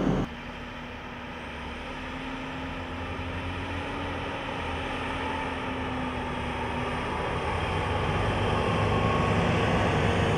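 JCB Fastrac tractor pulling a Krone TX forage wagon driving by: steady engine and running noise with a held tone, growing louder to a peak near the end.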